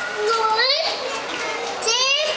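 Children's high-pitched voices and squeals, with two quick rising shrieks, one about half a second in and one near the end.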